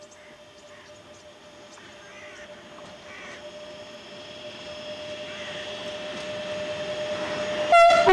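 DB Class 185 electric locomotive hauling a train of tank wagons, approaching and growing steadily louder. Near the end it gives a short, very loud horn blast as it passes.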